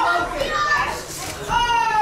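Ringside spectators shouting in raised, high-pitched voices. The calls come in bursts, with a brief lull about a second in and one long drawn-out call near the end.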